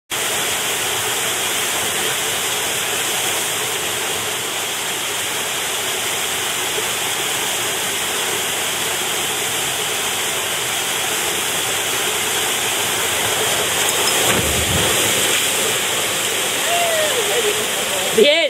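Waterfall pouring steadily into a canyon plunge pool, a loud, even rush of water. About fourteen seconds in, a short low surge of water as a canyoner slides down the waterfall and drops into the pool, followed near the end by a shouted voice.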